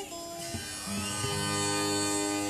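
Live band playing an instrumental passage: plucked acoustic guitar notes over long held, pitched notes, getting slightly louder about a second in.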